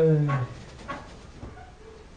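A man's voice letting out a single drawn-out "uuh" that falls in pitch, about half a second long, followed by only faint sounds.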